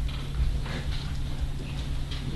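A few light knocks and clicks, spaced irregularly, over a steady low hum in the hearing room.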